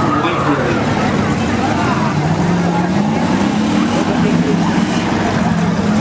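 Several stock car engines running at low speed around the track, their pitch drifting gently up and down together.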